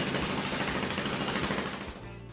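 Loud, steady, rapid mechanical hammering, a construction-type noise effect laid over a cartoon clip, fading out near the end.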